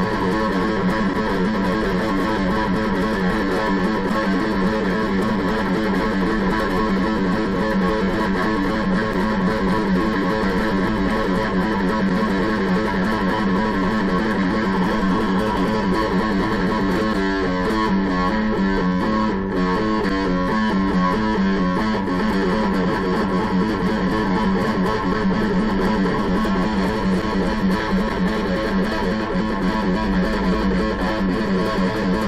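Gold-top Les Paul electric guitar playing a fast, continuous picked finger exercise on the low E string, cycling through the notes at the 2nd, 4th and 5th frets. The quick repeated notes make a steady buzz like a mosquito, and the pattern shifts briefly in the middle.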